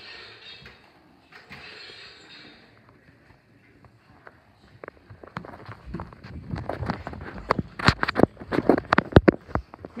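Footsteps on wooden stairs, mixed with knocks and rubbing from a handheld phone being carried. Quiet at first, then a quick, irregular run of thuds and knocks in the second half that grows louder near the end.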